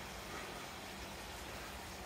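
Steady low hiss of water running into a koi pond, with a faint steady hum underneath.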